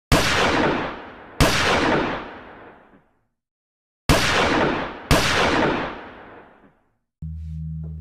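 Four gunshots with long echoing tails, in two pairs about a second apart; then a low steady music drone begins near the end.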